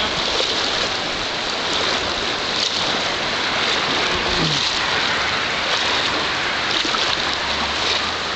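Steady rushing of a shallow, fast-flowing river over a rocky riffle.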